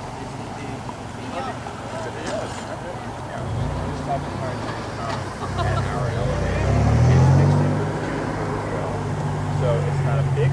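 A motor vehicle's engine, faint at first, growing louder from about a third of the way in with a shift in pitch near the middle, then holding a steady hum to the end. Faint voices of people talking underneath.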